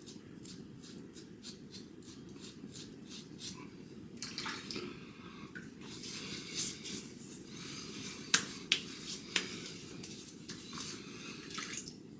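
Safety razor scraping across lathered stubble in short, quick strokes, about three a second. Then hands rub and splash water over the face, with three sharp smacks, the loudest sounds here.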